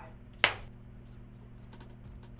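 A film slate clapperboard snapped shut once, a single sharp clack about half a second in, marking the sync point for take 5 of scene 4F. A faint steady low hum runs underneath.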